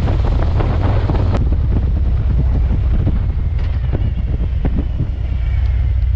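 Loud, steady wind buffeting a motorcycle-mounted camera's microphone while riding at road speed, a heavy low rumble with gusty rushing over it.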